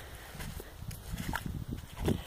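Faint low rumble with soft, irregular thumps: footsteps and handling noise on a hand-held phone microphone.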